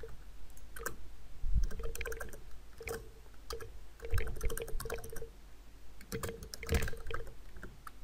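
Computer keyboard typing: irregular runs of keystroke clicks, a few with heavier low thuds.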